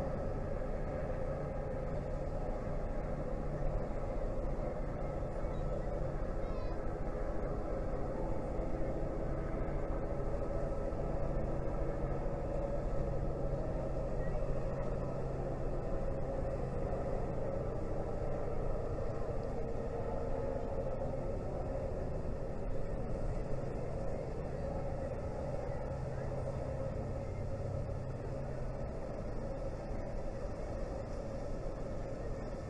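Steady low drone of the lake freighter Indiana Harbor's diesel engines, four 20-cylinder General Motors diesels, as the ship passes close by under way.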